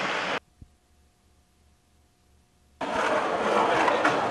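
Skateboard wheels rolling on concrete, a steady rush that cuts off about half a second in. Near silence with a faint steady hum follows, and the rolling starts again near three seconds in.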